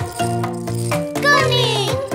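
Children's cartoon song music with a bouncy bass line and rattle-like percussion; a voice with gliding pitch comes in during the second half.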